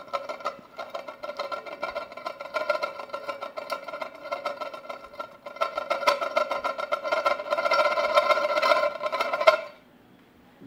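An upturned ceramic soup plate turned round by hand on the plate beneath it. Its rim grinds against the lower plate, so both plates ring with a steady tone under a gritty scrape. It grows louder in the last few seconds and stops suddenly near the end as the top plate is lifted.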